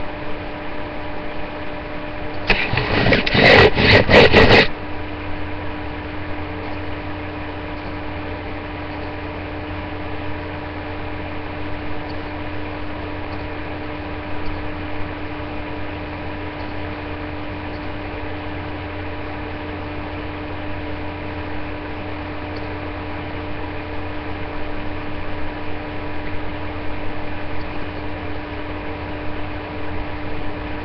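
A steady electrical or machine hum over hiss. About two and a half seconds in, a loud crackling burst of noise lasts about two seconds, then the hum carries on.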